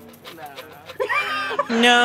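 Pennies clinking faintly as they are poured from a cup into cupped hands, a laughing "nah", then, from near the end, a loud long note held at one steady pitch.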